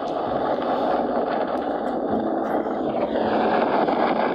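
Steady wind and road noise of a motorcycle ride at speed, with the engine running underneath.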